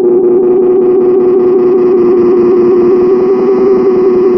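Moody Sounds Mushroom Echo delay pedal feeding back on itself into self-oscillation: a loud, steady, buzzy drone held at one pitch.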